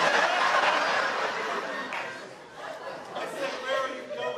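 Audience laughter and crowd noise at a live comedy show, loudest at the start and dying away over about two seconds. A single voice speaks again near the end.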